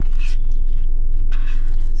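A car idling, heard from inside its cabin as a steady low rumble. Over it come a few soft scrapes of a spoon digging into a paper cup of soft-serve.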